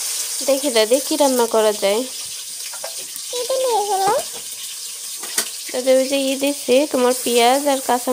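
Green paste sizzling in hot oil in an aluminium pan as it is tipped in from a cup, a steady frying hiss throughout.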